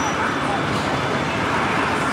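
Small engines of half-scale miniature cars running steadily, with background chatter.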